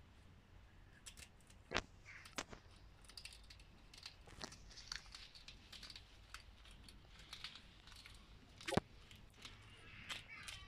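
Hedgehog foraging: faint, irregular crunching, clicking and rustling as it roots and chews among leaves and soil, with two sharper clicks about two seconds in and near the end.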